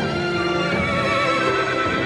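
Dramatic soundtrack music with sustained tones, and a horse whinnying, a quavering call partway through.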